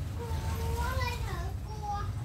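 A young child's voice in drawn-out, sing-song tones, several in a row with gently gliding pitch, over a steady low hum.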